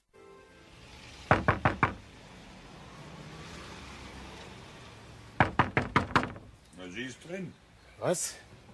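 Knocking on a door: a quick run of four knocks, then after a few seconds a second, longer run of knocks. A voice is heard briefly near the end.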